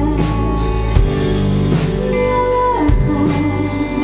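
Live band music with guitar and drums, and a woman singing over it.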